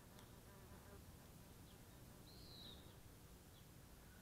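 Near silence: faint outdoor ambience, with one faint, high, arched chirp about two and a half seconds in.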